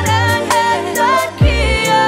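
R&B song with female vocals holding long, wavering notes over a drum beat of hi-hats and a deep kick drum that falls in pitch about one and a half seconds in.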